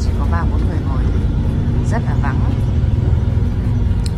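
Steady low rumble of a city bus driving, heard from inside the passenger cabin, with short snatches of voices about half a second and two seconds in.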